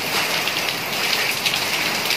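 Steady heavy rain falling on wet tiled paving, with small hailstones coming down in it.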